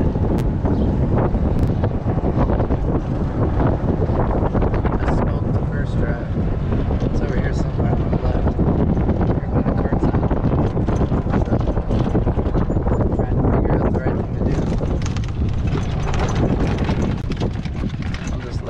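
Wind buffeting the microphone of a camera riding in a moving golf cart: a loud, steady rumbling rush, with the cart's running noise underneath.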